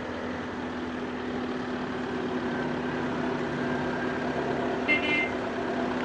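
Steady city road traffic from passing cars, with a constant low hum underneath. A brief high-pitched tone sounds about five seconds in.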